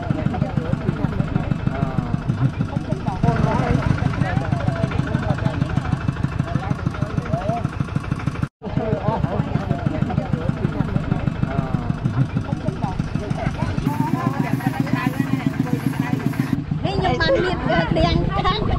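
Single-cylinder diesel engine of a two-wheel 'scissor tractor' chugging steadily at an even, rapid beat while pulling a loaded passenger trailer, with people's voices over it. The sound cuts out briefly about halfway through, then the chugging resumes.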